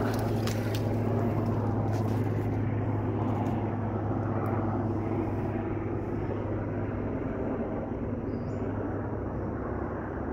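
A steady low drone, like a distant engine, runs throughout. Scattered snaps and crunches of footsteps through dry brush and forest debris come in the first few seconds.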